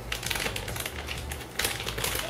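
Small blind-bag toy wrapper crinkling as it is handled and torn open by hand, in a run of short crackles that grows busier near the end.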